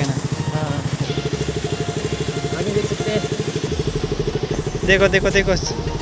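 Motorcycle engine running at low revs, an even rapid pulsing beat, as the bike moves slowly.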